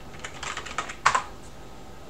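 Typing on a computer keyboard: a quick run of keystrokes lasting about a second, ending with one louder key press, as a search word is typed.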